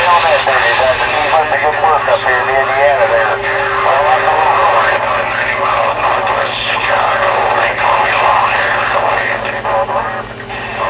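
A distant CB station's voice coming in strongly over a CB radio receiver's speaker, too distorted for the words to be made out, over a steady low hum. The operator takes the station to be running a little kicker, a linear amplifier.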